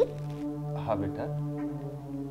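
Background music of steady, low held tones, like a soft drone, under a short phrase of speech about a second in.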